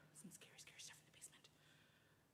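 A woman's faint whisper, a few short breathy hisses over near silence.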